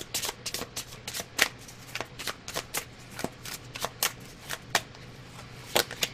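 A deck of tarot cards being shuffled by hand, the cards slapping and clicking together in an irregular rapid run of sharp snaps.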